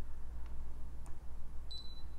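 Faint taps of a stylus on a Brother ScanNCut SDX125 touchscreen over a low steady hum, with one short high beep near the end.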